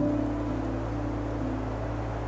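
Background music of sustained held notes over a steady low drone.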